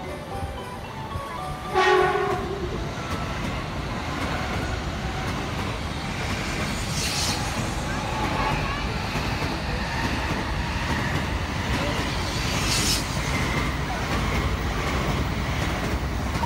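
A Shinkansen bullet train sounds one short horn blast about two seconds in, then runs past as a steady rush of wheel and air noise that swells briefly twice.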